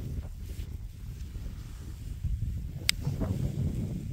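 Wind buffeting the microphone in an unsteady low rumble, with one sharp click about three seconds in.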